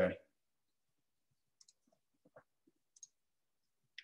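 A few faint, scattered clicks of a computer mouse over near silence, the first about a second and a half in and the last about three seconds in.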